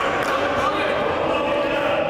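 Many voices talking over one another in a large, echoing sports hall, a steady murmur with no single voice standing out.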